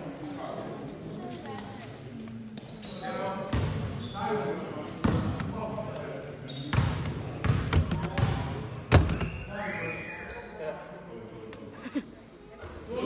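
A basketball bouncing on a sports-hall court floor several times, mostly in the middle of the stretch, with players' voices in the hall around it.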